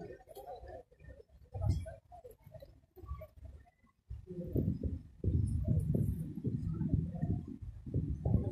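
A saddled horse making low sounds close to the microphone, patchy at first and louder and more continuous in the second half.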